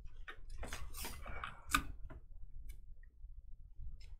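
Trading cards and plastic card sleeves being handled on a desk: a run of light clicks and rustles, with one sharper click a little before halfway.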